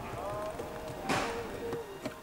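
Faint background music, with a short scraping knock about a second in as a hand screwdriver works a T20 Torx screw out of the dashboard screen mount.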